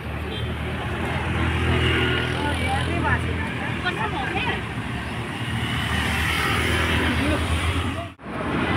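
Roadside traffic: motor vehicle engines running and passing, with a steady low hum, and people's voices in the background.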